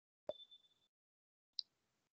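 Two short electronic blips in near silence: a sharp click with a brief high tone about a quarter second in, then a shorter high pop near the end.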